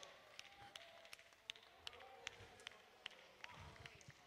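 Near silence: room tone with faint, evenly spaced ticks, about two and a half a second.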